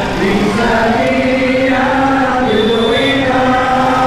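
Men's voices chanting a melodic devotional chant in unison, loud and steady, with long held notes that step slowly up and down in pitch.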